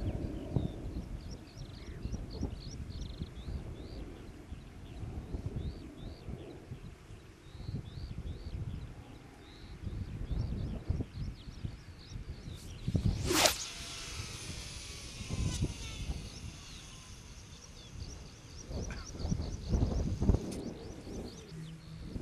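Wind buffeting the microphone, with small birds chirping. About 13 seconds in, a sharp, loud whoosh as a beachcaster rod is whipped through a pendulum cast with a 150 g lead, followed by a faint high whine fading over several seconds as line runs off the reel.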